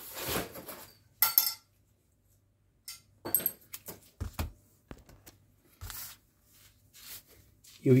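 Light handling sounds on a tabletop: scattered clicks, taps and knocks as small items are picked up and put down, including a roll of double-sided tape. There is one sharp click about a second in.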